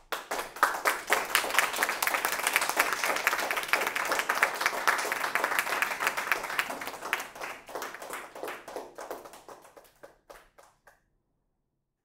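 Audience applauding: dense clapping starts abruptly, thins out from about seven seconds in, and ends with a few scattered claps near the end.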